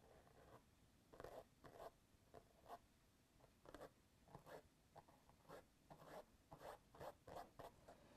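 Faint, short scratchy strokes of a small flat paintbrush laying paint onto the mural surface, about two a second in an uneven rhythm.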